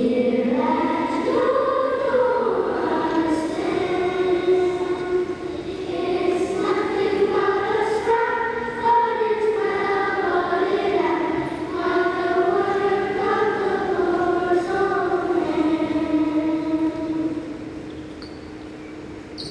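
A group of voices singing a song together in unison, the singing stopping shortly before the end.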